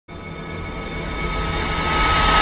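Intro sound effect for an animated logo: a droning swell of several steady high tones over a deep rumble, growing steadily louder.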